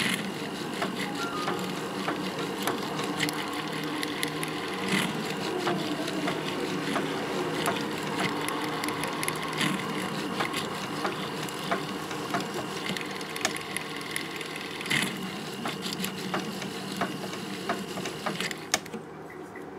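Powered jeweller's handpiece running steadily as its fine tip cuts the gold between the stones of a pavé ring, with frequent small sharp ticks of tool on metal.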